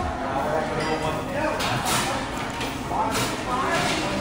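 Indistinct voices in a restaurant dining room, with two short hissing rushes of noise, one just under two seconds in and another about three seconds in.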